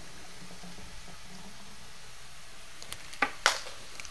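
Ground beef frying in a pan with a steady, quiet sizzle. Two sharp clicks come near the end.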